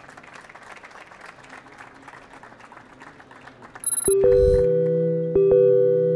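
Audience applauding quietly for about four seconds. Then an electronic outro jingle cuts in with a short high chime and loud, sustained keyboard chords that change about every second and a half.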